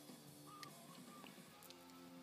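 Near silence: faint music from a car stereo head unit, with a few faint clicks as its knob is turned.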